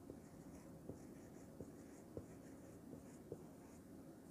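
Marker pen writing on a whiteboard, faint, with a few light taps of the tip against the board as a word is written.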